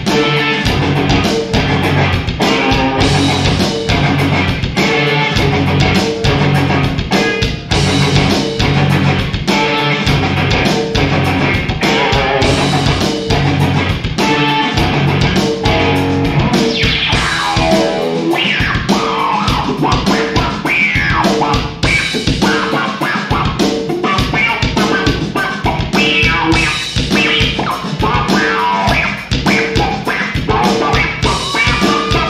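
Live instrumental rock: electric guitar over a steady drum beat. In the second half the guitar plays fast lead runs of rising and falling notes.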